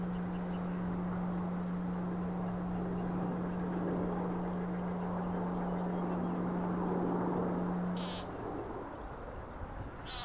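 A frog seized by a grass snake giving a steady, low-pitched distress call, held without a break until it stops abruptly about eight seconds in.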